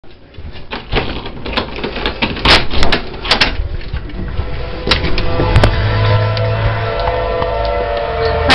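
Clicks and knocks from a hand-held camera and nearby fittings. From about halfway, a tornado siren's steady wail comes in and holds.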